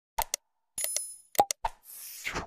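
Sound effects of a like-and-subscribe animation: quick mouse-click pops, a short bell ring about a second in, three more clicks, then a swish near the end.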